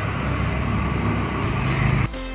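Steady outdoor background noise: an even rushing hiss with a strong low rumble underneath.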